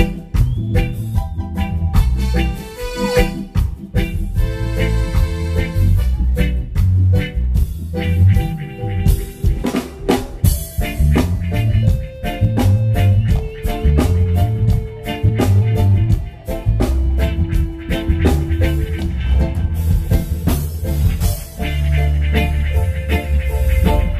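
Live reggae band playing an instrumental stretch: drum kit with rimshots on the snare, a deep bass line and electric guitars, with a few long held notes.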